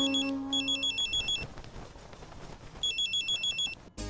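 Nokia mobile phone ringing with an incoming call: three bursts of a fast, high electronic trill, about a second each, the last after a longer pause. A low held flute note from the film's score fades out under the first ring.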